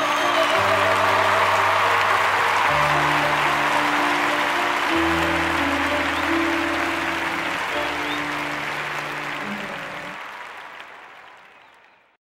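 Audience applauding over the final slow chords of a grand piano, the held chords changing a few times under the clapping. Everything fades out near the end.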